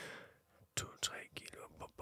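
Quiet whispered speech: a man counts "two, three" under his breath in Danish, after a soft breath at the start.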